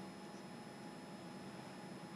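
Faint, steady hiss of room tone with a few faint steady hums, and no distinct sound events.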